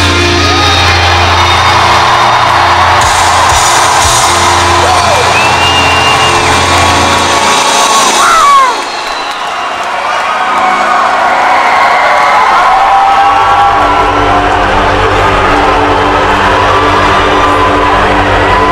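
Live heavy rock band playing loud through an amphitheater PA, with strong bass, until the song ends about halfway through. The crowd then cheers, whoops and whistles, and a low steady drone comes in a few seconds later.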